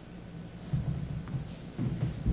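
Two low, muffled rumbling bumps on a lectern microphone, about a second apart, over faint room noise: the kind of handling noise made when something is shifted on the podium during a pause in a talk.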